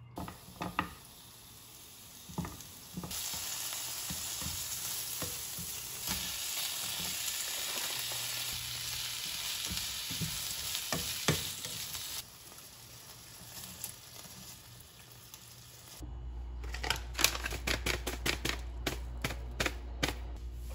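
Carrot slices dropping into an oiled frying pan with soft clicks, then cabbage, carrot and bacon sizzling loudly in the hot non-stick pan as a spatula stirs and taps them, the sizzle dropping off about twelve seconds in. Near the end, a quick run of small taps and rattles from a seasoning shaker over a plastic food container.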